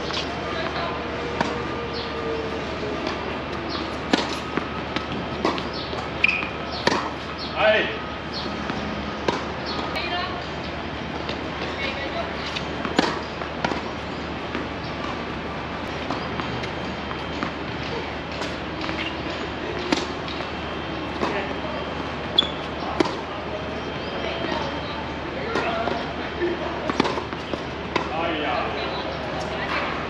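Tennis balls struck by rackets and bouncing on a hard court during a rally: sharp pops every second or two.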